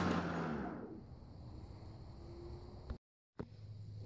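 Kobalt 80-volt cordless electric lawn mower's motor and blade winding down after the bail handle is released, its hum dying away over about a second to a faint hiss. A short click comes near three seconds, just before a brief dropout.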